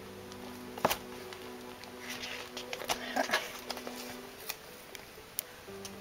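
Soft background music of long held notes, with a sharp click about a second in, a brief rustle in the middle and another click near the end as paper items are handled.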